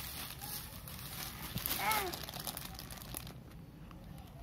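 Thin plastic bag crinkling and rustling as a baby waves it about, with a short baby vocalization about two seconds in. The crinkling dies down after about three seconds.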